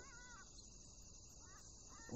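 Faint outdoor ambience: a steady high insect drone, with a few short bird chirps in the first half second and again near the end.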